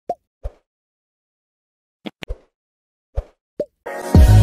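A series of short pop sound effects, about seven in all, in irregular clusters over silence: two near the start, a quick run of three about two seconds in, and two more near the end.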